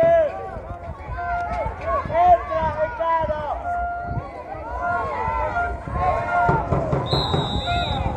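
Many young voices shouting and calling out together across an outdoor handball court. About seven seconds in, a referee's whistle sounds one long steady blast, stopping play for a seven-metre throw.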